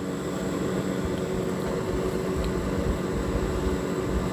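Steady low background rumble with a faint constant hum, like a running motor.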